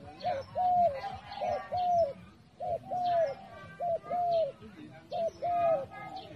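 A gamebird calling: five two-note phrases, each a short note followed by a longer arched one, repeated about every second and a quarter.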